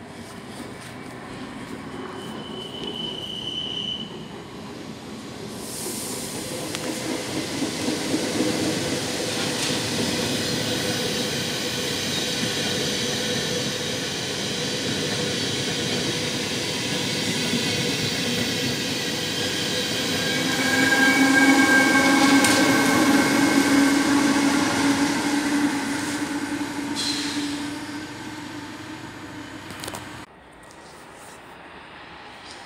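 Electric multiple-unit train, an NS Stadler FLIRT, running in along the platform, its rail and running noise swelling. From about 20 s in, whining tones from wheel squeal and traction motors stand out over it as the train slows, then fade away near the end.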